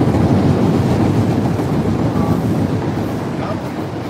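A loud, low rumble of a heavy vehicle passing close by, fading toward the end.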